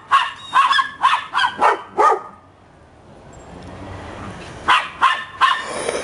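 Dogs barking in quick strings at play, about three barks a second. The barking breaks off for about two seconds midway, then starts again.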